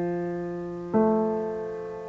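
Grand piano: a held low F fading away, then about a second in the A above it is struck and rings on. These are the first two notes of an F major chord, played one at a time.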